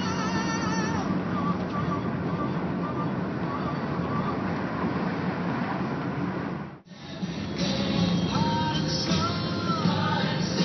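Music with a wavering melody over the steady running and road noise of a car driving along a road. The sound cuts out briefly about two-thirds of the way through, then the music comes back more strongly.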